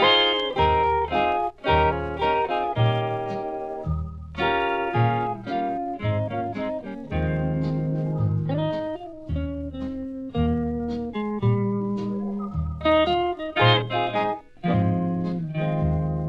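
Instrumental break in a recorded song: a guitar picks out the melody note by note over a bass line playing on the beat.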